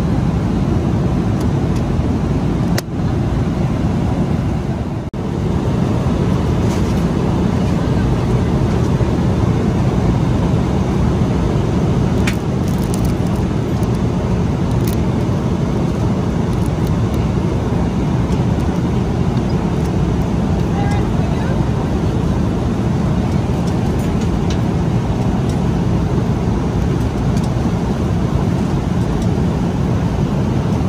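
Steady in-flight cabin noise of a Boeing 777-200LR, the low rush of engines and airflow. The level dips briefly twice in the first five seconds, and a few light clicks come in the middle.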